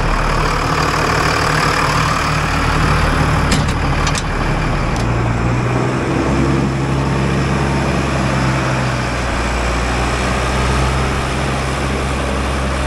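Diesel engine of a John Deere 844 wheel loader running steadily, its note rising about halfway through as the loader moves off. A few short clicks sound a few seconds in.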